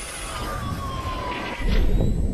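Electronic sound design of a TV advertising-break ident: a synthesized tone sliding slowly down in pitch over a low rumble, then a loud, deep boom near the end.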